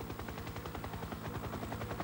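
Helicopter rotor chop: a fast, even, steady beat.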